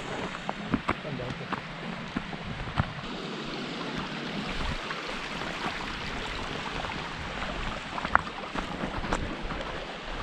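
A mountain stream running over rocks, a steady rush, with scattered footsteps on stones.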